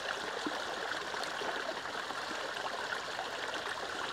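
Shallow rocky stream flowing over stones, a steady trickle.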